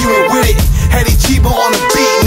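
Hip hop beat: deep bass hits under a melody of steady held notes.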